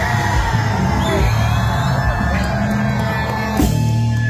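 A Bangla rock band playing live and loud, with a voice yelling over the music.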